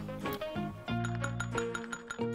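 Background music with steady held notes. About a second in come a few light metallic clinks as a small bell is shaken, one that does not ring properly.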